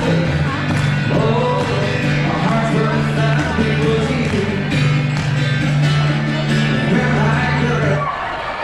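Live music from a male singer playing guitar, amplified through a PA, with steady sustained low notes under the singing.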